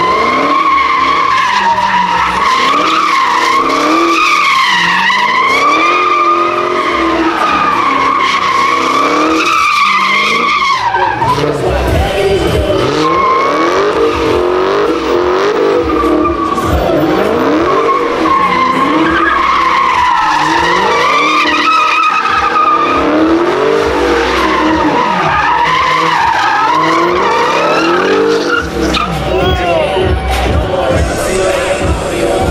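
Dodge Charger doing donuts, its rear tyres squealing in a long wavering howl over the engine. About a third of the way in, the squeal gives way to the engine revving up and down, and the squealing comes back later.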